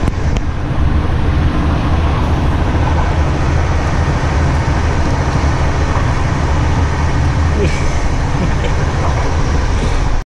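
Passenger train running, a steady low rumble heard from inside the carriage, with passengers' voices mixed in.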